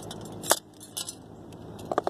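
A hammer strikes copper pipe once, a sharp metallic clink with a brief ring about half a second in, followed by a faint tick and then a quick pair of lighter metal clinks near the end as metal is set down.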